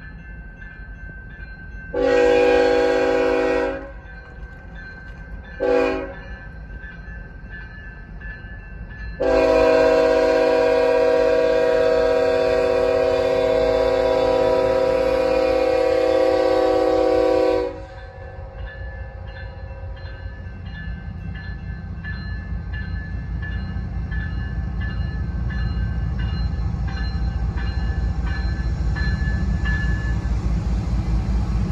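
Multi-tone air horn of a Kansas City Southern GE ET44AC locomotive sounding for a grade crossing: a long blast about two seconds in, a short one, then a long blast held for about eight seconds. A crossing-signal bell rings steadily underneath, and the rumble of the locomotives' diesel engines grows louder as they reach and pass the crossing.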